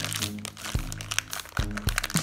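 Crinkling of a shiny black plastic blind bag as hands squeeze it to feel the small figure inside, over background music with a steady beat.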